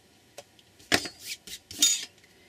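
Handheld hole punch snapping through a strip of cardstock about a second in, with a few smaller clicks after it. Near the end comes a loud metallic clatter as the steel punch is set down on a steel ruler.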